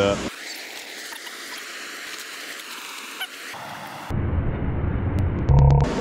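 Steady hiss of rushing water pouring over a spillway. About four seconds in, an edit switches to a louder low rumbling noise, with a short run of evenly spaced clicks near the end.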